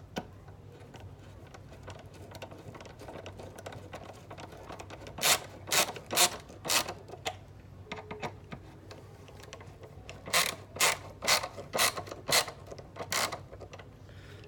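A ratcheting screwdriver driving wood screws into a wooden frame: the ratchet clicks sharply on each back stroke, about two clicks a second, in two runs, one mid-way and one near the end, with fainter ticking between.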